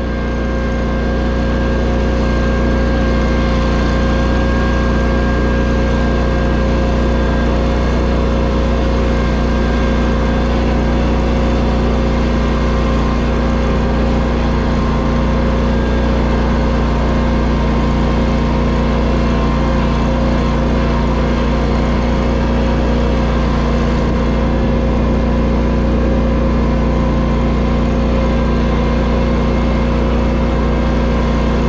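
Ventrac tractor's engine running at a steady speed while the tractor drives along, fading in over the first second or two.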